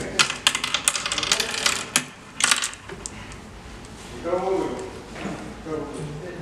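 Oware counters clicking as a player drops them one by one into the pits of a wooden oware board while sowing: a quick run of clicks for about the first three seconds.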